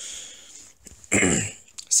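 A man coughing and clearing his throat: a breathy rasp, then one louder, short cough about a second in.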